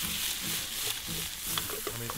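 Wild mushrooms (morels, ceps, chanterelles and girolles) sizzling steadily as they fry in piping-hot olive oil in a pan.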